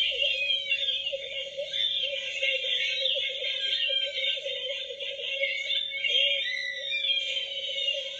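Music with warbling, wavering electronic-sounding tones that run on without a break.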